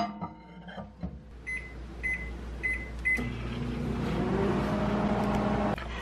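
Panasonic Inverter microwave oven: four short keypad beeps, then the oven starts and runs with a steady hum that cuts off abruptly shortly before the end.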